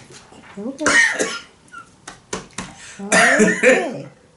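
A man laughing out loud in two bursts, a short one about a second in and a longer one near the end.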